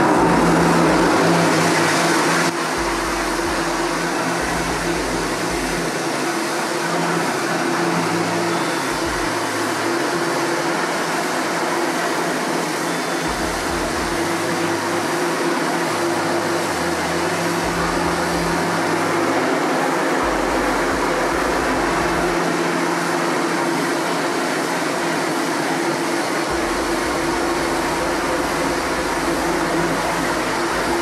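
Electric pressure washer running steadily with a constant hum, its water jet spraying onto a silk screen to wash out the unexposed emulsion. It is a little louder for the first two seconds or so.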